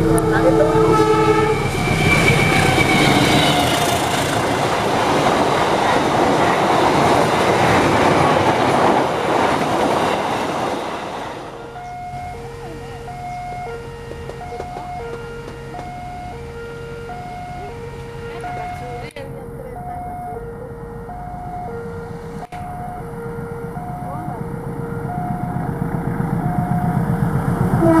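A diesel locomotive's horn sounds, then the train rolls past close by with a loud rumble of wheels on rails for about ten seconds. After a cut, a level-crossing warning signal sounds a steady two-tone alternating chime over a quieter background, and the next train's rumble grows louder near the end.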